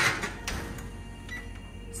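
A covered metal roasting pan set onto the oven rack and the oven door shut: a loud clank right at the start, then a smaller knock about half a second later.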